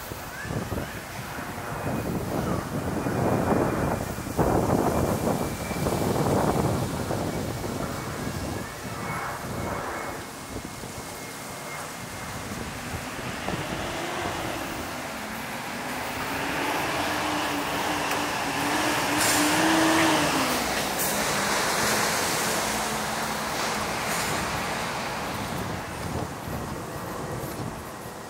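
Street traffic noise with wind buffeting and breathing noise on the camera's built-in microphone, in irregular swells through the first third. From about halfway a vehicle approaches and passes, its low hum rising to a peak about three quarters of the way through and then fading.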